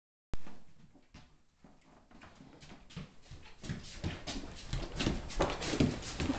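A short click at the very start, then a large dog nosing and mouthing a small toy: irregular soft sniffs and knocks that grow steadily louder and busier from about two seconds in.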